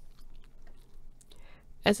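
A pause in a woman's close-miked narration: faint mouth clicks and a soft in-breath, then she starts speaking again near the end.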